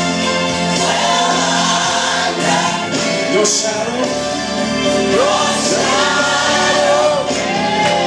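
Gospel worship music: voices singing a gliding melody over steady sustained accompaniment.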